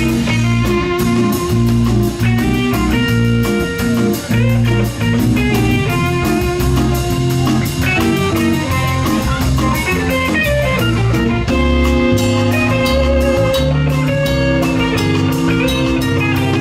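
Live funk band playing: electric guitar lines over electric bass, keyboard and drum kit, with a steady hi-hat ticking on the beat.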